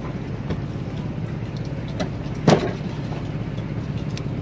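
Fishing boat's engine running steadily with a low rumble. One loud thud comes midway, as blocks of ice are handled on the wooden deck.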